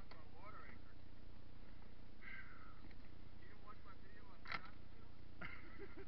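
Faint, untranscribed voices talking in short bits, with one sharp knock about four and a half seconds in.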